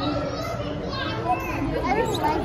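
Children's voices and the chatter of other people around them, overlapping; no single sound stands out.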